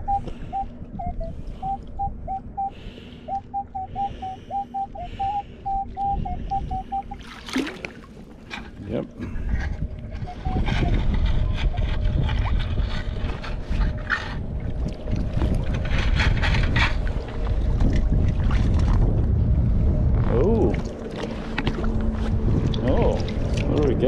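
Minelab Equinox 800 metal detector giving a run of short, repeated beeps on one pitch for about the first seven seconds, signalling a buried target. From about ten seconds in, water and gravel are churned as a stainless sand scoop digs into the lake bottom.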